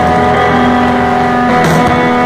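Rock band playing live, loud distorted electric guitars holding sustained chords, shifting to a new chord about one and a half seconds in.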